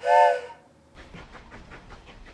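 A short train whistle: a chord of several tones lasting about half a second. From about a second in, the low rumble and irregular clicking of a train rolling along the rails.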